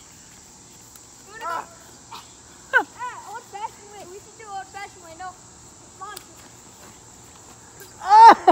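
A steady, high-pitched insect chorus runs throughout, with a few short vocal sounds from people, calls or exclamations without clear words, at about a second and a half and between three and five seconds in.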